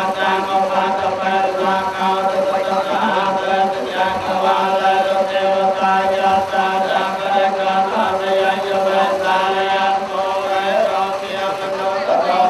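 Buddhist monks chanting in unison, the voices held on one steady pitch throughout.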